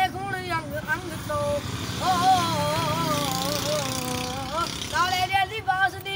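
A boy singing unaccompanied, holding one long wavering note for about three seconds in the middle, between shorter sung phrases.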